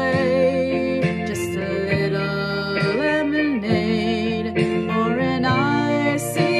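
A song with acoustic guitar accompaniment and a woman singing the melody in long held notes with vibrato.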